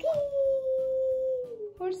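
A young child's voice holding one long wordless "ooh", sliding slightly down in pitch and stopping about one and a half seconds in.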